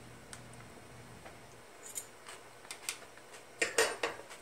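Light clicks and taps of a fork against a food container while coleslaw is being scooped out: a few scattered ticks, then a louder quick cluster of clicks near the end.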